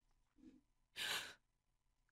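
A short breathy sigh from a person, one exhale about a second in, preceded by a faint low sound just before it.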